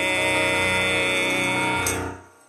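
Hymn music with piano holding its final chord steadily, ending with a short click as it stops.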